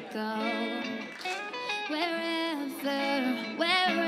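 A woman singing live into a handheld microphone, holding and sliding between long notes, over a steady guitar accompaniment.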